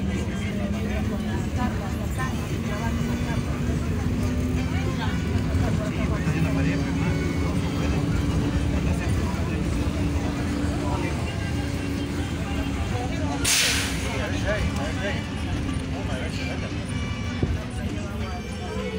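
City bus running, heard from inside the cabin: a steady engine and road rumble with a droning tone that climbs in pitch about six seconds in. About thirteen seconds in comes a short, sharp hiss of compressed air.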